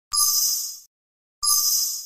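Windows speech recognition event sound ('Speech Disambiguation') played twice through the Sound control panel's Test button: a short, bright, ringing chime, each sounding for under a second, about 1.3 seconds apart.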